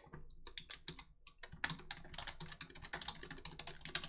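Typing on a computer keyboard: a quick, uneven run of key clicks, with one louder keystroke near the end.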